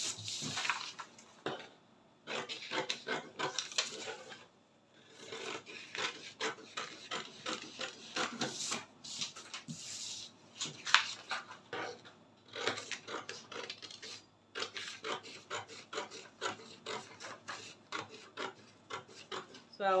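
Scissors cutting through paper pattern, a run of quick snips with the paper rustling and crinkling, broken by a few short pauses.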